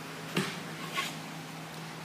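Quiet gym room tone with a steady low hum, and two brief soft sounds a little over half a second apart from people walking across the rubber floor.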